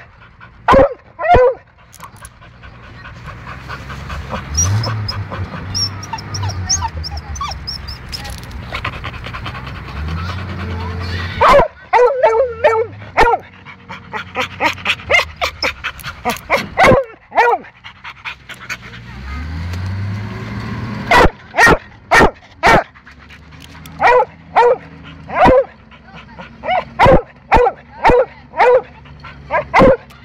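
A dog barks close by, in loud runs of short barks near the start, in the middle and almost continuously through the last third. Under it the M29C Weasel's engine runs as the tracked carrier drives, rising in pitch several times as it is revved.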